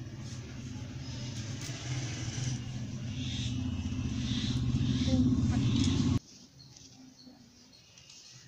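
A low rumbling noise that grows steadily louder for about six seconds, then cuts off suddenly.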